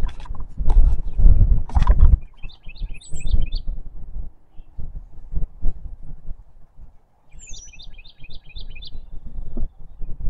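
A songbird singing two phrases, each a quick run of six or seven repeated chirps with a higher slurred note among them, about four seconds apart. A low rumble is loudest in the first two seconds.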